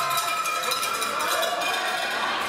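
A cowbell being shaken rapidly, a fast run of metallic clanks that stops about a second and a half in, over crowd voices.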